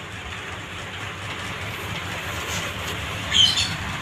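Steady background room noise with one short, high-pitched squeak about three and a half seconds in.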